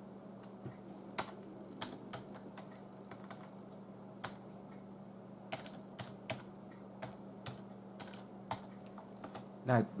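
Sparse, irregular clicks of computer keys being pressed, roughly one every second, over a steady low hum. A man's voice comes in right at the end.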